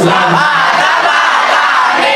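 Male voices singing a sholawat through a PA, the melody winding and bending in pitch in long melismatic phrases.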